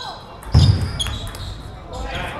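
A table tennis ball in play, with sharp clicks of the celluloid-type ball off the bats and table about a second in. A heavier thump about half a second in is the loudest sound.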